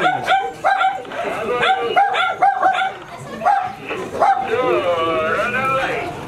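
A dog barking in quick runs of short, high barks, with people talking around it.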